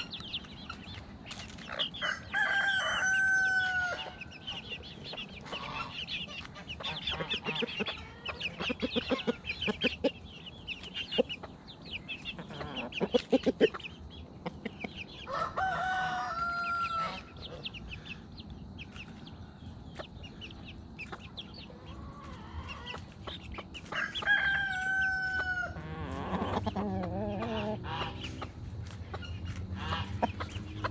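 A rooster crowing three times, each crow a held, pitched call about a second and a half long, roughly ten seconds apart, over steady clucking of hens and high peeping of chicks.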